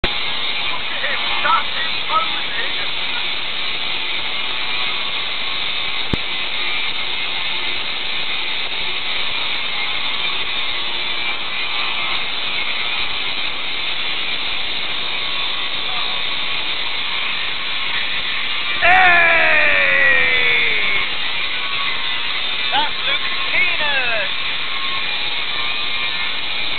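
Steady outdoor background hiss with a few brief voice-like sounds. About nineteen seconds in, a loud pitched sound slides down over about two seconds, and shorter falling sounds follow a few seconds later.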